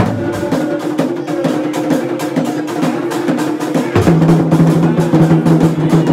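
Traditional drum ensemble playing a fast, dense rhythm of strikes over a steady low tone. The deeper drum sound grows louder about four seconds in.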